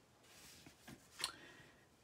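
Faint sounds of hands pressing and sliding cardstock on a work mat: a soft rustle, a couple of small ticks, and a brief sharper paper click about a second and a quarter in.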